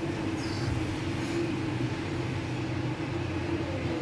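Soft breath blowing to cool a hot forkful of pancake, over a steady low hum and rush of kitchen background noise.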